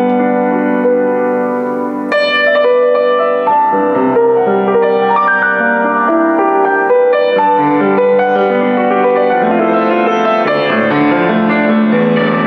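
Boston GP-156 baby grand acoustic piano being played: sustained chords with notes ringing on under the melody, and a strong new chord struck about two seconds in.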